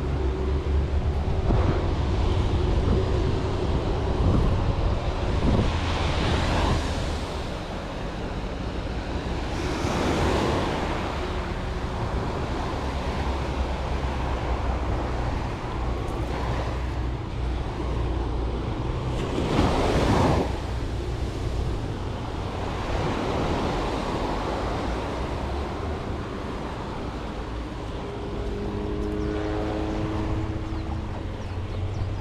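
Small surf breaking and washing up the beach in repeated swells, the loudest about twenty seconds in.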